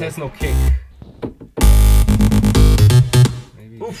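Short snatches of electronic dance music from reFX Nexus 3 synthesizer presets, starting and stopping as presets are auditioned. The loudest is a bass-heavy phrase that starts about one and a half seconds in and lasts just over a second, followed by softer sweeping synth sounds.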